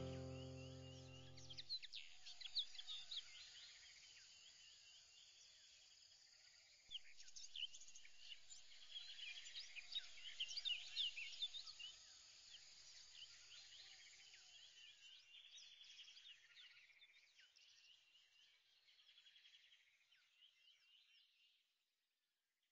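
Background music dying away in the first two seconds, then faint bird chirping over a light hiss, busiest in the middle and fading out just before the end.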